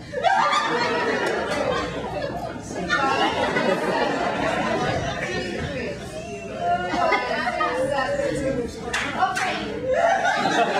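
Audience laughing and chattering, with several voices overlapping.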